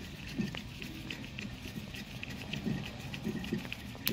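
Faint ticking and scraping of a steel clevis being screwed by hand onto the threaded push rod of a trailer air brake chamber, with one sharper click about half a second in, over low background noise.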